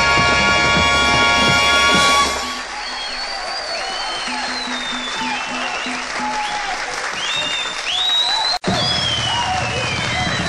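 A live orchestra holds a loud sustained chord after a drum roll, cutting off about two seconds in. Then the nightclub audience applauds, with scattered whistles. A split-second dropout falls near the end.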